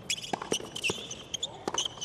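Tennis rally on a hard court: a string of sharp knocks from racket strikes and ball bounces, with short high squeaks from shoes on the court surface.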